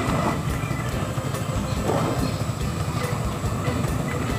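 Large aluminium pot of curry broth at a rolling boil, a steady, dense bubbling rumble.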